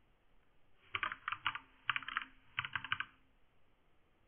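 Typing on a computer keyboard: three quick runs of keystrokes, starting about a second in.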